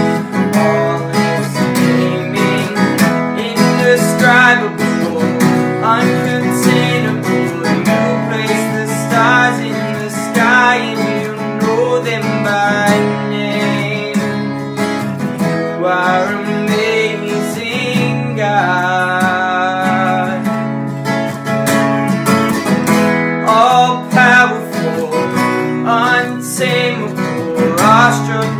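Two acoustic guitars strumming chords in a steady worship-song accompaniment, with a young man's voice singing the melody over them at times.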